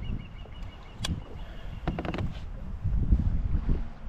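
Wind rumbling on the microphone in irregular gusts, with a few sharp clicks and knocks about one second and two seconds in.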